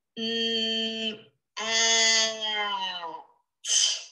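A voice stretching out the word 'mat' sound by sound in a phonics drill: a held 'mmm' for about a second, a short pause, then a longer held 'aaa' that sags slightly in pitch, and a short sharp burst near the end.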